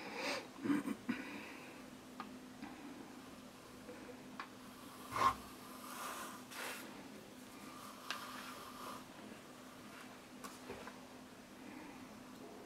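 Faint handling noise from a pump shotgun and its cardboard box being moved about, with scattered light clicks and knocks; the loudest knock comes about five seconds in. A steady low hum runs underneath.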